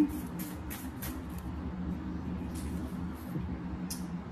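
Steady low hum with faint soft rustles of tarot cards being handled in the first second or so, as the next card is drawn from the deck.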